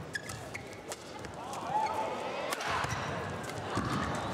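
Badminton rally: a few sharp strikes of rackets on the shuttlecock, with court shoes squeaking on the playing mat about two seconds in.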